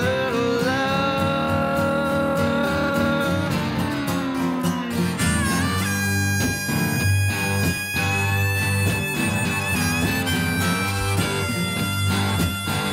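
Instrumental break of an acoustic Americana song: held, bending electric guitar lead notes over strummed acoustic guitar, with a harmonica playing sustained notes in the second half.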